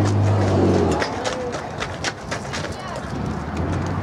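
Faint voices with a low steady hum that cuts off about a second in, followed by several sharp clicks.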